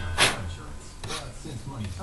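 A spray gun loaded with lacquer-melt solvent giving a short hiss about a quarter second in and a fainter one about a second in.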